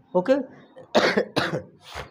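A man coughs in a quick run of short, rough bursts starting about a second in, just after saying "okay".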